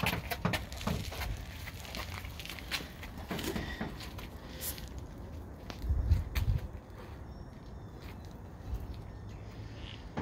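Fabric car cover rustling and crackling as it is handled and pulled back, with footsteps and scattered small clicks. A low rumble, the loudest part, comes about six seconds in.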